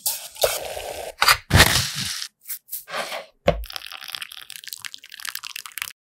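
Close-miked kitchen preparation sounds: something poured into a steel pot of water, then several sharp, crisp cracks and crunches, and a stretch of fine crackling that cuts off abruptly near the end.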